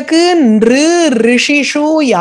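Speech only: a woman's voice talking without a pause.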